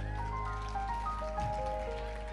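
Live reggae band playing the closing bars of a song: a line of held notes stepping up and down over a sustained low bass note, with a steady high hiss, slowly fading.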